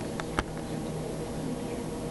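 Steady room hum, like a ventilation fan, with one sharp click less than half a second in and a fainter click just before it.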